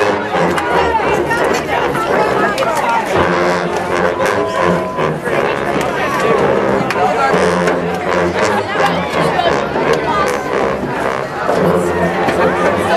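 Massed sousaphones and tubas playing low held notes in stretches, mixed with a crowd's loud chatter.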